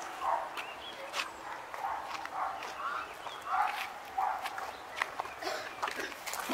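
A dog barking repeatedly at a distance, with short barks coming roughly once a second.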